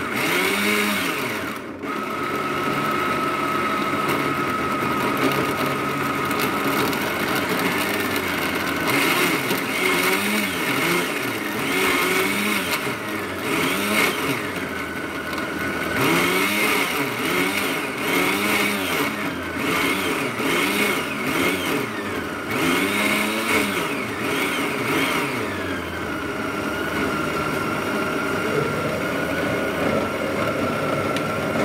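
Countertop blender motor running at speed, puréeing garlic, onion, parsley and dill with water. Its pitch rises and falls every second or two as the blades work through the pieces.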